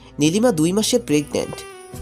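A voice speaking a short line for about a second over steady background music.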